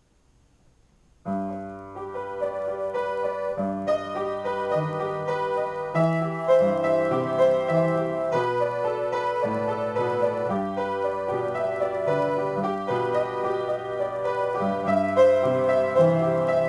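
Solo piano improvisation that begins about a second in after near silence: sustained chords with moving bass notes under a melody, played continuously.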